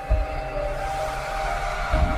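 Intro music: held synthesizer notes over deep bass hits, one just after the start and another at the end.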